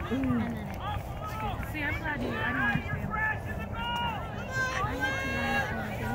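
Several high-pitched voices calling and shouting at a distance, overlapping one another across an outdoor sports field, over a steady low rumble of outdoor noise.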